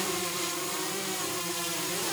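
Small multirotor drones hovering and flying, their propellers giving a steady whir with a held buzzing hum.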